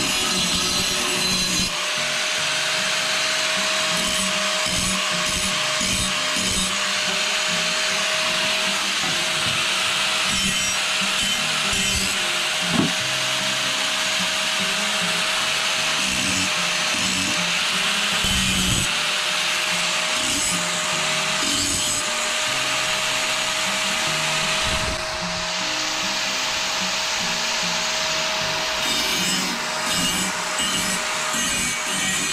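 Hitachi angle grinder running continuously with a steady motor whine, its disc grinding against the cut ends of galvanized steel flat bar. The grinding noise rises and falls as the bar is worked, easing briefly near the end.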